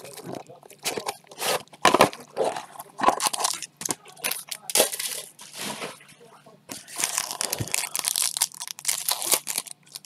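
Hands opening a small cardboard card box and tearing open a foil trading-card pack. Irregular crinkling and crackling of the foil wrapper, busiest over the last three seconds as the cards are pulled out.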